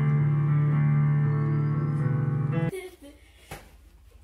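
Digital piano playing held, sustained chords at a steady level. The sound cuts off abruptly almost three seconds in, leaving quiet room sound with a few faint knocks.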